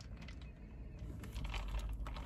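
Quiet sipping of an iced coffee through a straw, over the low steady rumble of a car cabin.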